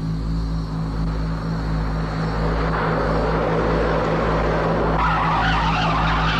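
A car approaching, its noise building, then tyres screeching in a long skid from about five seconds in, over a steady low hum.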